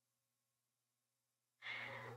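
Near silence, then a short breath, an inhale or sigh, near the end just before someone speaks.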